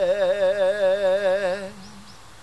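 A man singing a Shōwa-era Japanese pop ballad, holding one long note with a wide vibrato that ends about a second and a half in.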